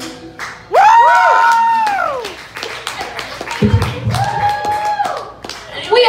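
Audience clapping and cheering at the end of a live song: scattered handclaps throughout, a loud high whoop close by about a second in that rises and falls in pitch, and another shouted cheer near the middle.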